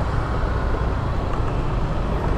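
Steady engine and road noise from a motor scooter riding slowly in city traffic, heard from the rider's own bike.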